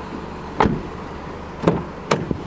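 Two sharp thumps about a second apart from the Nissan Qashqai's doors being handled and shut.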